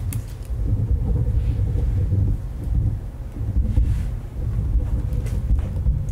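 An uneven low rumble, loud and deep, with a few faint ticks over it.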